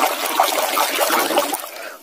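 Muddy water splashing and sloshing in a basin as a hand scrubs a plastic toy mask under the surface; the splashing fades out near the end.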